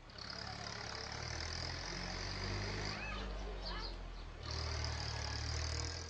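A steady low engine hum with a steady high-pitched buzz above it. The buzz drops out for about a second and a half past the middle, when a few short chirps come through, and the hum shifts about four and a half seconds in.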